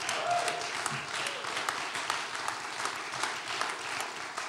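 Audience applauding, many hands clapping steadily, for a member's multi-year recovery milestone.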